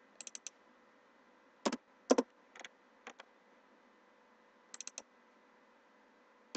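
Scattered clicks of a computer mouse and keyboard: a quick run of light clicks at the start, a few louder clicks about two seconds in, and another quick run of light clicks near the end.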